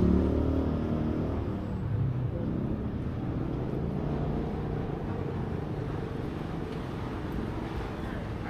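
Busy city street: a steady low rumble of road traffic, louder in the first couple of seconds and then settling to an even level.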